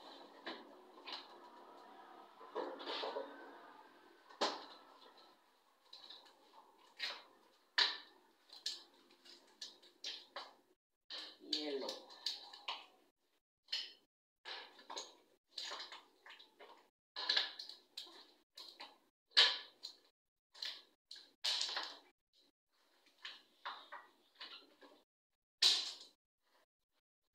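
Plastic ice cube tray being handled and ice cubes knocked loose: a long run of short, sharp cracks and clatters at irregular intervals.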